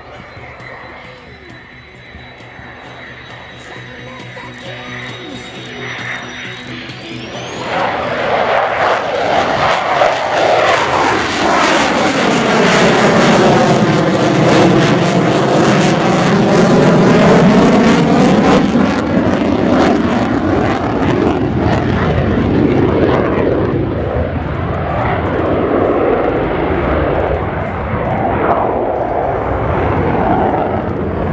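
An F-16 Fighting Falcon's single turbofan engine, heard from the ground during a display pass. A steady high whine climbs in pitch about seven seconds in as the engine spools up. The jet noise then swells into a loud, sustained roar with a sweeping, phasing sound as it passes close overhead, and stays loud as it climbs away.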